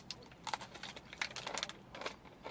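Faint, scattered crisp clicks and crackles from eating a Daim bar: the hard almond toffee crunching between the teeth and the red wrapper crinkling.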